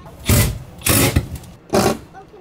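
Tape pulled sharply off a roll in three short pulls, each a loud rasp lasting under half a second.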